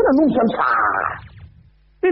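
A person's voice speaking, then a high, drawn-out vocal sound about half a second long, before it breaks off into a short pause near the end.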